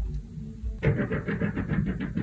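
Muffled noise from a neighbouring apartment heard through the ceiling: a low rumbling thud, then, a little under a second in, a fast rattling run of knocks, about eight a second, lasting about a second.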